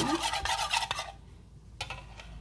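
A metal spoon beating eggs in a bowl: quick scraping and clinking strokes against the bowl for about a second, then quieter, with a couple of light clicks near the end.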